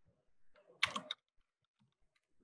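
Typing on a computer keyboard: a few faint keystrokes, then a quick run of sharper key clicks about a second in, as a word is typed.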